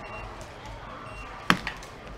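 Two short high beeps from a handheld barcode scanner reading garment tags, one near the start and one just past a second in. About one and a half seconds in comes a sharp knock, the loudest sound, with a smaller click right after it.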